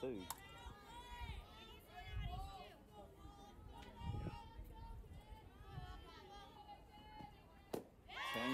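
Faint distant voices of players and spectators chattering around a softball field. Shortly before the end there is one sharp pop: the batter swings and misses and the pitch lands in the catcher's mitt.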